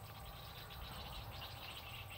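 Faint outdoor background: a steady low rumble with a thin haze above it and no distinct event.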